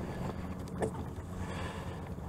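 A kayak's electric trolling motor running steadily with a low hum, with one light click a little under a second in.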